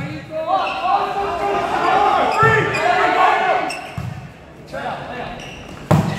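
Volleyball rally in a gymnasium: players' voices calling, and the ball being struck several times with echoing smacks, the loudest one just before the end.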